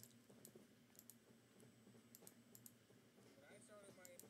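Near silence with faint, scattered computer mouse clicks, a sharper click right at the start as the video is set playing. A faint voice comes in near the end.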